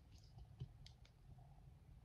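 A few faint clicks, about five in the first second, of fingernails and fingers on a mirrored plastic disco-ball cup as it is pressed into place.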